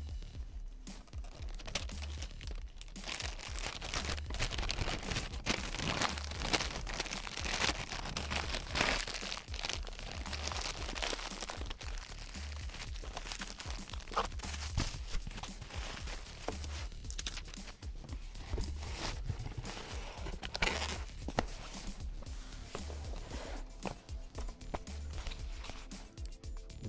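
Background music with a steady bass pulse, over continual crinkling and rustling of plastic bags and cardboard packaging being handled during unpacking.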